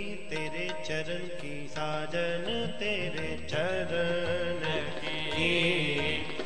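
Sikh kirtan music: a harmonium melody over held tones, with tabla strokes at intervals.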